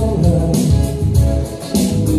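Electric guitar strumming over keyboard accompaniment with a steady beat, in an instrumental passage with no singing.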